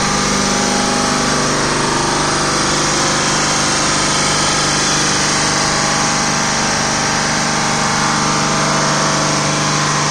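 Gram ammonia refrigeration compressor running steadily under power: a loud, even machine noise with a constant low hum and no change in speed.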